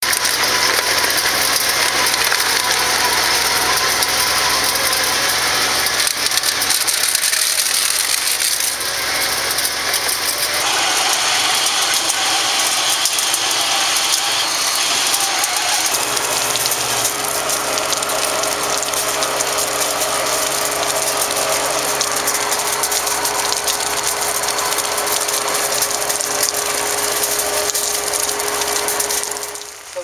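Industrial waste shearer-shredder system running loud and steady, with a dense, rapid rattling clatter as household trash such as plastic jugs and bags is fed into it. The sound changes abruptly a few times partway through.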